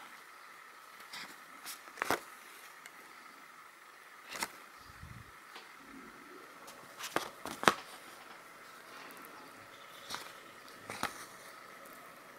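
Needle and thread working through plastic cross-stitch canvas: a handful of short, sharp clicks and rustles a second or more apart, the loudest about two seconds in, over a faint steady hum.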